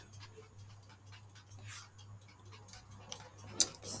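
Faint computer-keyboard clicks as a few characters are typed, with one sharper click near the end, over a low steady hum.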